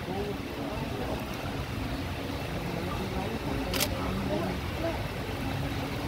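Low murmur of several voices talking nearby, over a steady background, with one brief sharp click about four seconds in.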